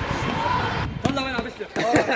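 Men's voices calling out briefly during a basketball shot, with a basketball bounce among them.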